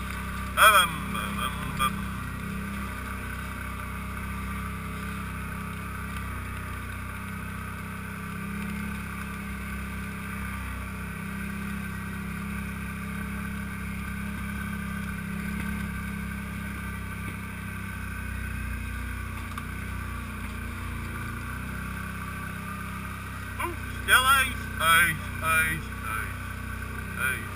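ATV engine running steadily as the quad is ridden over a rough, muddy trail. A person shouts briefly about a second in and several times near the end, and these shouts are the loudest sounds.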